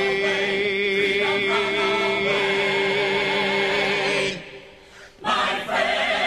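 A musical-theatre chorus of men and women singing a long held chord with vibrato, which cuts off about four seconds in. After a short gap the voices come back in on a new chord near the end.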